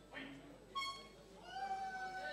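A short, high electronic beep signalling the start of the round, a little under a second in. It is followed from about halfway by a drawn-out, high-pitched shout.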